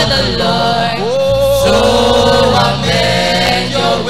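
Youth gospel choir singing, with lead voices on handheld microphones: drawn-out notes with no clear words, one voice sliding up about a second in and holding a long note.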